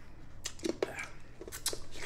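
Mouth noises from people sucking and chewing hard sour candy: an irregular series of short clicks and smacks.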